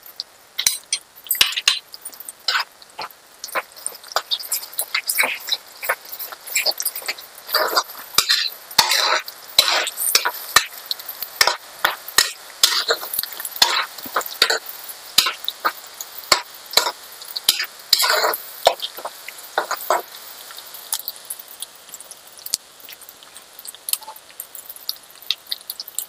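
Chopped onions and a spoonful of paste sizzling in hot oil in a hammered metal kadai, while a metal spatula stirs and scrapes against the pan with frequent clinks.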